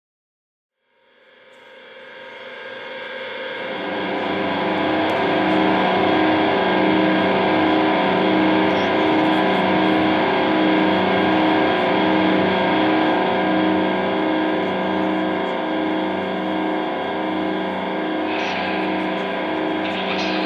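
Electric guitar drone through effects pedals, fading in over the first few seconds and then held as a steady sustained chord with a slow, even pulse.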